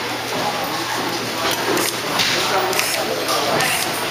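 Busy workshop hall noise: background voices with a few light clicks of small parts being handled.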